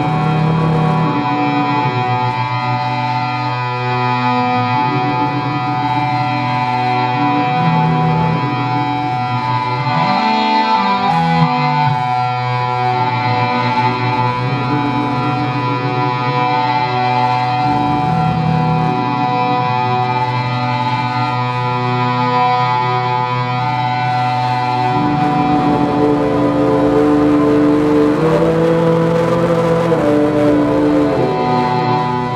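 Live experimental electronic drone music: many sustained tones layered into a dense wall, over a slow low figure that changes about every two seconds. A gliding pitch passes through about a third of the way in, and a new low tone enters near the end as the sound grows slightly louder.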